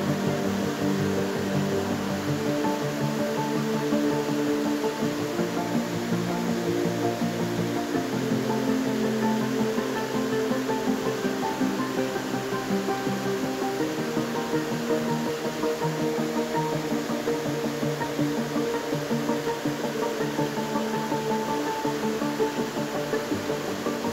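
Soft background music of long held chords that shift to new notes every several seconds.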